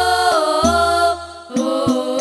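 Girls' voices singing a sholawat in unison into microphones, long held notes that step up and down in pitch, over deep booming frame-drum strokes of an Albanjari ensemble. The sound dips briefly a little past the middle, then the singing and drumming resume.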